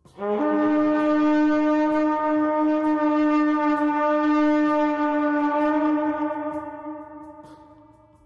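A horn blowing one long, deep blast that steps up briefly at the start into a single steady note, then fades away over the last couple of seconds.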